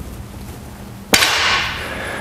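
A loaded barbell set down onto a rubber gym floor at the end of a set of bent-over rows. It lands with one sharp clang about a second in, and the plates ring briefly as it fades.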